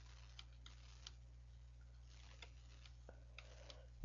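Near silence with a steady low electrical hum and faint, irregular clicks of a computer mouse while drawing animation frames.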